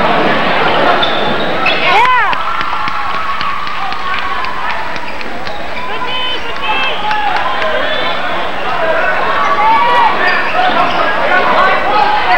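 Gym crowd noise and voices at a basketball game, densest in the first two seconds, then a basketball dribbling on the hardwood floor with short sneaker squeaks through the rest.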